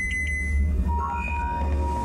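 Sci-fi film sound design: a deep steady low hum, with three quick electronic beeps at the start and a steady electronic tone coming in about a second in.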